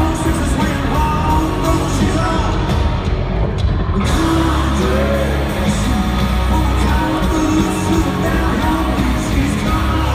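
Live country-rock band with electric guitars, bass and drums playing loudly, a male lead singer singing over it, amplified in an arena. The top end briefly thins out about three seconds in.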